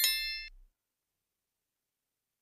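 Notification-bell sound effect: a bright metallic ding that rings out and fades away within the first half second.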